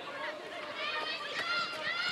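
Match sound from a football pitch: a series of short, high-pitched shouts and calls from players and a small crowd over a low background hum of the ground.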